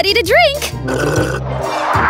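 A person's short exclamation with a wavering pitch in the first half second, then background music with low, steady bass notes.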